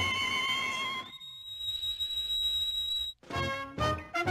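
Cartoon orchestral score. A held, wavering note slides upward about a second in and becomes one long high, steady tone. It cuts off suddenly a little after three seconds, giving way to quick, short staccato notes.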